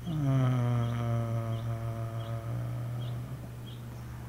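A man's voice holding one long low hummed note. It slides down in pitch at the start, then holds steady for about two and a half seconds before fading.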